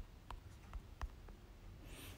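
Faint, irregular taps of a fingertip on a smartphone touchscreen while typing an email address on the on-screen keyboard, about five ticks in two seconds.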